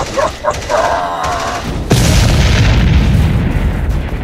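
Sound-effect gunfire, then about two seconds in a loud explosion boom that rumbles on.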